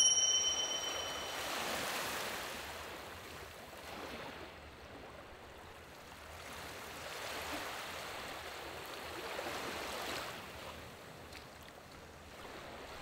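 Small waves washing gently onto a sandy beach: a soft, even wash that swells and fades twice.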